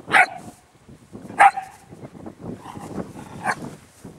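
Dog barking: two sharp, loud barks about a second apart, followed by a few softer barks near the end.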